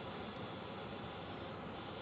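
Faint, steady hiss of background room noise with no distinct event.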